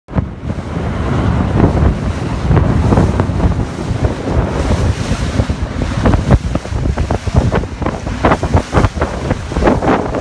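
Wind buffeting the microphone in irregular gusts on an open rigid inflatable boat under way, over the rush of sea water.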